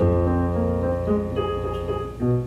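Digital piano being played: a low bass note held under a melody of single notes that change every half second or so.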